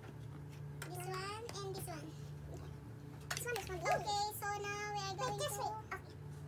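A young girl's high voice vocalising without clear words: a short phrase about a second in, then long drawn-out notes from about three seconds in.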